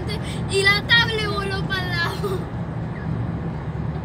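Inside a moving car's cabin: a steady low drone of engine and road noise. A voice speaks for about two seconds in the first half.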